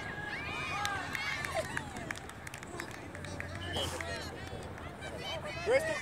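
Overlapping shouts and calls of spectators and players across an open soccer field, over a low murmur of crowd chatter. Two louder shouts come near the end.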